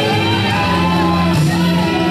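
Live church worship music: a loud singing voice, close to shouting, over sustained instrument notes played steadily underneath.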